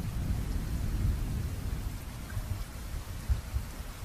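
Steady rain falling, with a low rolling rumble of thunder through it, strongest in the first second or so and easing toward the end.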